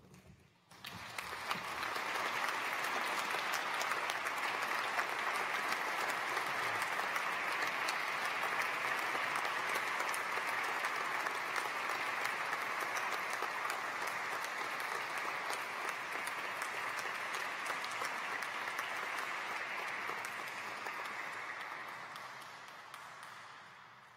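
Audience applauding: a long, steady round of clapping that starts about a second in and fades away near the end.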